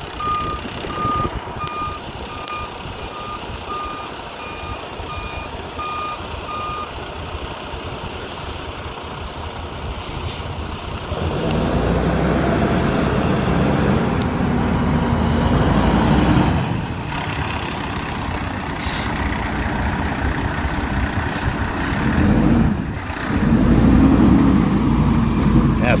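A fuel tanker truck's back-up alarm beeping evenly, about one and a half beeps a second, over a heavy diesel engine, and stopping about seven seconds in. About eleven seconds in, the diesel engine grows louder with a steady low hum, dips briefly twice and stays loud near the end.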